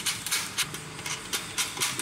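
Light, irregular clicks and scrapes of plastic parts being handled as a red-dot finder is pushed back onto its mounting bracket on a telescope tube, about eight or nine small knocks spread over two seconds.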